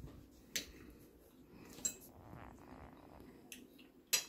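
A metal fork clinking against a ceramic dinner plate while picking through food, a few light clicks spaced about a second apart.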